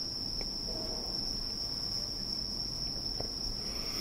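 A cricket trilling in one steady, high, unbroken tone, over a faint low background hum.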